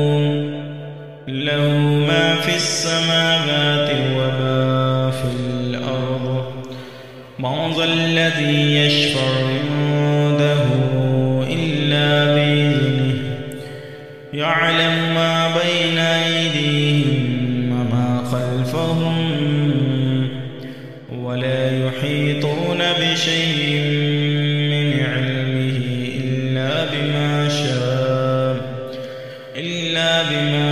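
A man reciting the Quran in a slow, melodic chanting style, holding long drawn-out notes in phrases of about seven seconds with a short breath between them.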